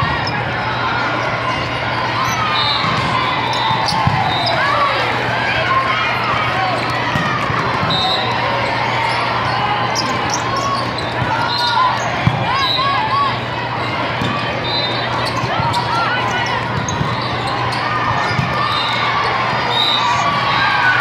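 Volleyballs being struck and hitting the floor, with sharp contacts scattered through a steady din of players' and spectators' voices in a large hall.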